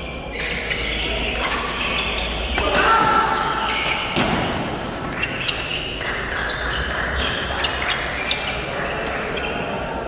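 Badminton rally: rackets striking the shuttlecock and players' feet on the court, with the crowd talking and shouting throughout.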